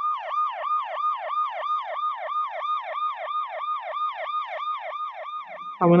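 Ambulance siren in a fast yelp: each sweep rises quickly and falls away, about four times a second.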